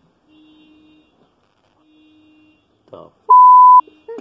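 A single loud electronic beep at one steady pitch, lasting about half a second near the end, right after a short spoken word.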